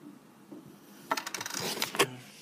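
Close handling noise of the camera being picked up: a rapid, loud burst of small clicks and rattles begins about a second in, after a quiet first second.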